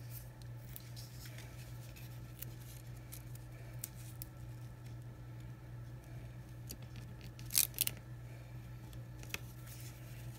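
Faint paper handling: a sticky cardstock strip is pressed and smoothed down onto a card over ribbon, with scattered light ticks and a short crisp rustle about three-quarters of the way through, over a steady low hum.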